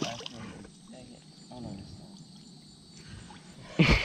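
Largemouth bass being lifted out of a lily-pad pond, with a brief splash of water near the end. Faint voices sound now and then.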